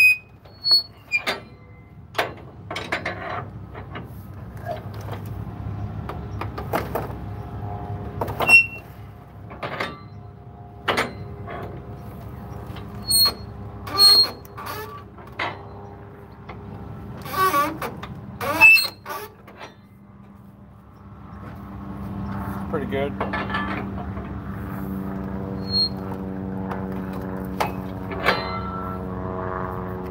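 Flatbed trailer strap winches being cranked tight with a steel winch bar: sharp metallic clicks and clanks of the ratchet and bar, irregular, through the first twenty seconds or so. From a little past twenty seconds a steady engine sound comes in and keeps running.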